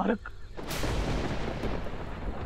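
Dramatic boom sound effect: a sudden crack a little under a second in, followed by a heavy low rumble that keeps going.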